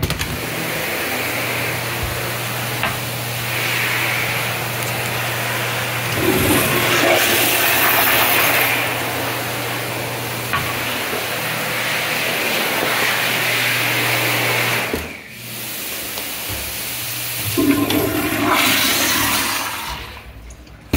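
Toilet flushing: a loud rush of water with a steady low hum running under it for about fifteen seconds. The rush then drops off, and water surges again briefly near the end.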